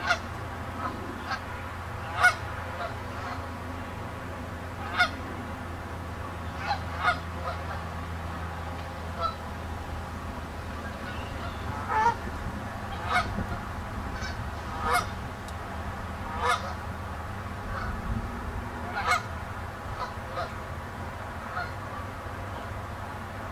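Canada geese on the water honking: short single honks from several birds, scattered irregularly every second or two, over a steady low hum.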